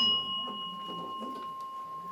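A Buddhist bowl bell struck once, ringing on with a clear high tone that slowly fades; its higher overtone dies away within the two seconds while the main tone sustains.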